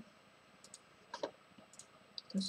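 A few faint, sparse clicks of a computer mouse.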